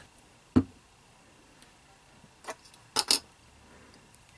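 A few light taps and clicks from hands handling small craft items, a glue bottle and a wooden stick, over a tabletop: one sharp tap about half a second in, faint ticks, then a quick double click near the three-second mark.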